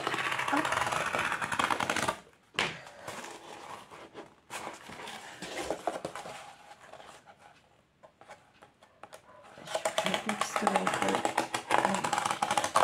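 Craft knife blade being drawn through corrugated cardboard, a rapid scratchy ticking as it crosses the flutes. It comes in spells, strongest at the start and again near the end, with a quieter pause in the middle.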